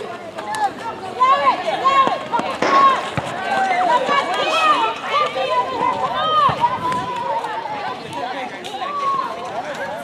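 Young netball players calling and shouting to each other during play, in many short, high-pitched calls.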